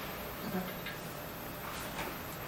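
Quiet room tone with a brief faint murmur of a voice and a few light ticks.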